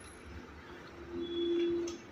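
Faint service-bay background noise with a steady low hum that grows louder over the second second and stops just before the end.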